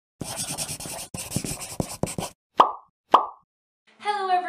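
Cartoon-intro sound effects: about two seconds of scratchy noise full of small ticks in three runs, then two short, loud plop pops about half a second apart, each a quick upward blip that dies away.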